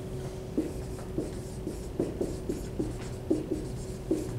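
Dry-erase marker writing on a whiteboard: a series of short squeaks, one for each stroke of the letters.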